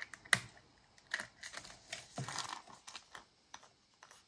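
Small metal clicks and light rustling from a metal ball chain and its clasp being handled and fitted through a charm's ring, with one sharper click about a third of a second in.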